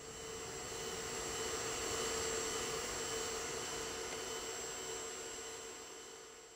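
Gas flame jetting from a welded aluminium pumpkin burner: a steady rushing roar with a low hum through it. It swells over the first two seconds, then slowly eases off.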